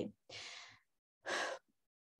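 A woman breathing into a close microphone: a soft, sigh-like out-breath about a quarter of a second in, then a shorter in-breath a little after the middle.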